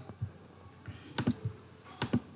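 A handful of short, sharp clicks of computer input, the strongest a close pair just past the middle, over a quiet background.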